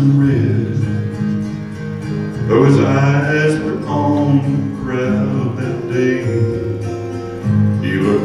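Live worship band: a man singing into a handheld microphone over guitar and electric bass guitar, in sung phrases over steady accompaniment.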